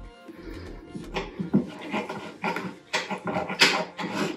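Close-up eating sounds: a run of short, irregular wet smacks and slurps as broth is sipped from a spoon and chewed, with the metal spoon scooping across the plate near the end.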